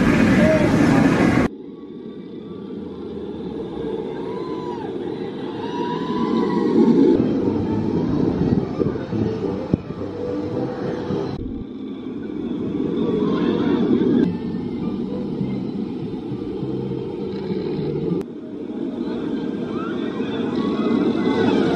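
Jurassic World VelociCoaster trains running along the steel track: a rumble of wheels that swells as a train passes, over a background of crowd chatter. The sound changes abruptly a few times.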